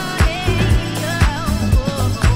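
Funk-disco dance music played by a DJ from vinyl: a steady kick drum and bass line under a wavering high melody.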